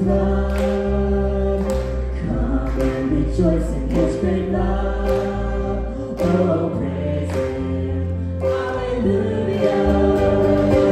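Live worship band playing a hymn: a woman's lead vocal with other voices singing 'alleluia' over electric bass, acoustic guitar, cello and drums, with drum hits marking a steady beat.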